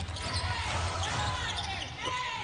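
Basketball game court sounds: sneakers squeaking on the hardwood with short squeaks, and a basketball being bounced.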